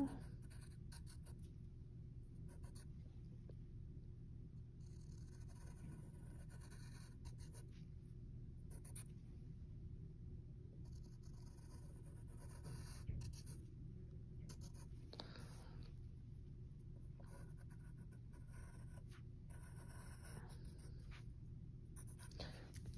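Pencil drawing curves on paper: faint scratching strokes that come and go, over a low steady room hum.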